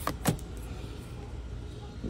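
A couple of brief flicks of tarot cards being pulled from a hand-held deck, in the first half-second, over a steady low background rumble.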